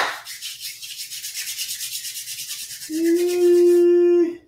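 Palms rubbed briskly together, a steady dry rubbing hiss. About three seconds in it gives way to a loud steady held tone of even pitch.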